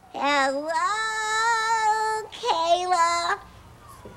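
A high, childlike voice singing two long held notes: the first glides up and holds for about two seconds, the second is shorter.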